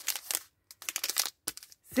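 Plastic wrapper of a packaged bar of soap crinkling as it is handled and set down, in two short spells of rustling.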